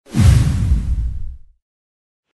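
Logo-reveal sound effect: a sudden whoosh over a deep boom, loud at first and fading out within about a second and a half.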